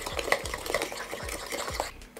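Metal spoon stirring a runny milk, yeast and egg batter in a bowl: wet swishing with a quick run of light clicks and scrapes as the spoon knocks the bowl, a few strokes a second.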